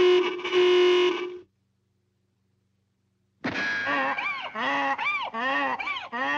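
Cartoon sound effects. First comes a steady, distorted honk-like tone lasting about a second and a half. After a pause of about two seconds comes a run of about five squawking, goose-like cries that rise and fall in pitch.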